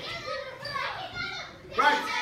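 Children's voices talking and calling out, with a louder outburst near the end.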